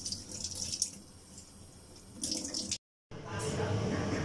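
Water running from a kitchen tap into a sink, with small clicks of shellfish being handled. It cuts off suddenly just before three seconds in, and a louder, different background follows.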